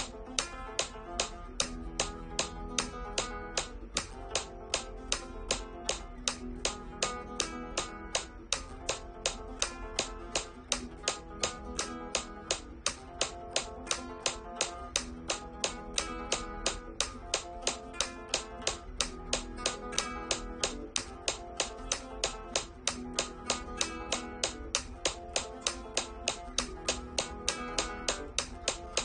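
Flamenco guitar played fingerstyle in continuous fast arpeggios, a thumb note followed by repeated index-middle-ring runs up and back across the strings over a held chord. A metronome app clicks sharply on every beat, the loudest sound, its tempo gradually speeding up from about 148 to 200 beats a minute.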